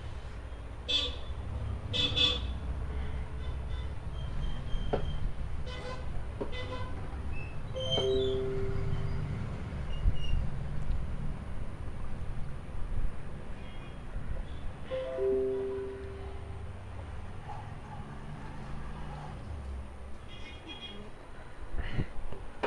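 Low traffic rumble with a vehicle horn sounding twice, each a short steady toot of about a second, several seconds apart, plus a few scattered clicks.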